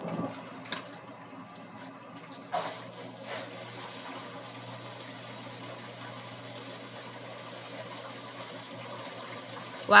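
GE combination washer-dryer running in its condenser drying cycle: a steady hum from the turning drum, with water rushing down the drain as moisture taken from the clothes is pumped away. A few soft knocks come in the first few seconds.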